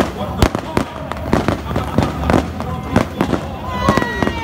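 A rapid, irregular string of sharp bangs, several a second, from simulated gunfire in a staged combat demonstration.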